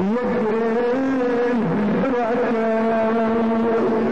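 A man's voice singing a Kurdish maqam in long held notes that waver and bend slowly in pitch.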